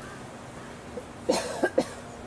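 A person coughing close by: three short coughs in quick succession, about a second and a quarter in.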